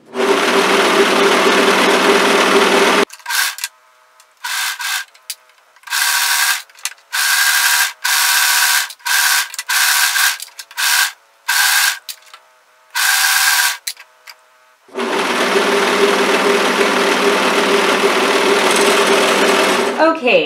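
Brother overlocker (serger) stitching a seam in knit fabric. It runs steadily for about three seconds, then stops and starts in a dozen short bursts, then runs steadily again for the last five seconds.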